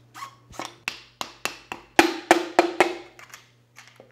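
About a dozen sharp taps, roughly three or four a second, on a piston driven down through a steel band ring compressor into a cylinder bore of a Datsun L26 six-cylinder block. The taps are loudest past the middle, with a short ring after them.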